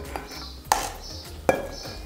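Bread cubes tumbling from a steel bowl into a ceramic baking dish, pushed along with a metal spoon, with two sharp knocks about a second apart.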